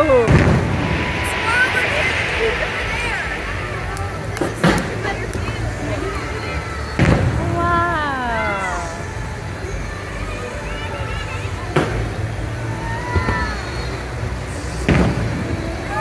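Fireworks going off, about five sharp bangs a few seconds apart, over show music with singing voices from loudspeakers.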